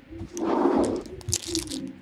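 A small cardboard hockey card box being opened by hand: a scraping, rustling burst about half a second in, then light crackling and clicks as the flaps and packaging are worked.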